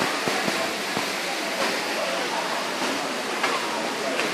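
A steady rushing noise, like running water, with the faint murmur of people's voices over it.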